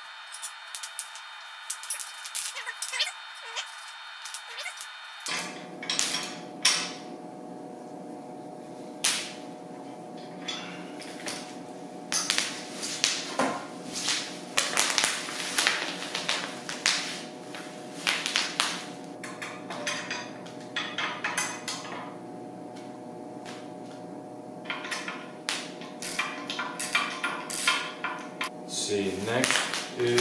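Steel bolts, washers and nuts clinking, and hand tools knocking against the steel push tube of an ATV snow plow as it is bolted together: irregular sharp metallic clicks and knocks over a steady hum.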